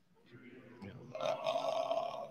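Low men's voices in a large reverberant hall, a faint murmur that swells about a second in, between sung lines of a hymn.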